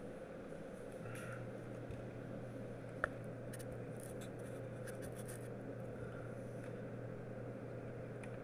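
Breville Dual Boiler espresso machine humming quietly and steadily, a low hum joining in about a second in, with a single sharp click about three seconds in.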